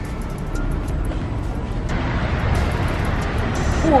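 Street ambience: steady traffic rumble that swells about halfway through, with background music under it.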